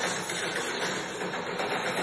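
Movie trailer soundtrack: a dense, steady hissing wash of sound effects with music beneath it.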